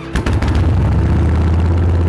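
Harley-Davidson V-twin motorcycle engine started on the push-button starter: a brief burst of cranking strokes just after the start, catching at once and settling into a steady, loud, deep idle.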